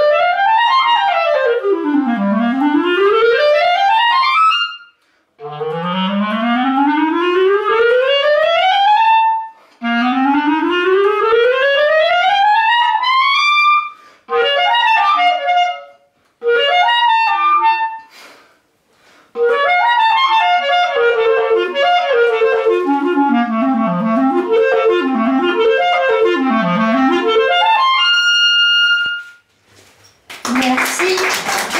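Clarinet playing fast runs up and down its range in several phrases with short breaks between them, ending on one long, high held note.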